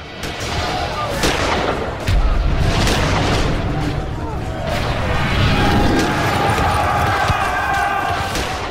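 Staged battle sound effects: scattered musket shots and a heavy cannon-like boom about two seconds in, over dramatic music.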